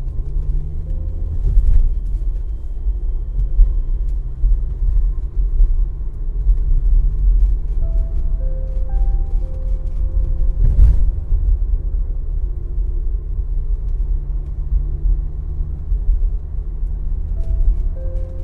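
Soft ambient background music with slow sustained notes over a steady low rumble of a moving train, with a couple of brief clacks.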